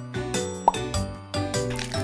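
Light children's background music with a single short cartoon "plop" sound effect, a quick rising blip, about two-thirds of a second in.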